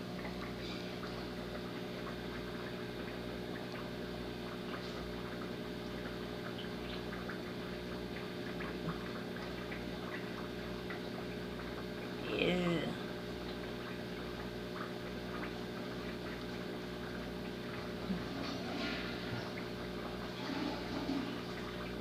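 Turtle-tank water pump running steadily, a constant electric hum over moving water with a low, regular throb.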